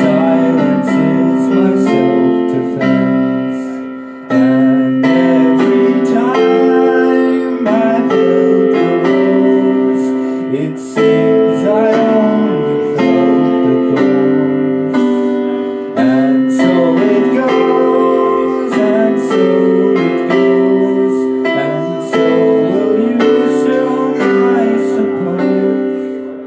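Roland digital keyboard played live in a piano voice: held chords re-struck every second or two, with a man's voice singing over them at times.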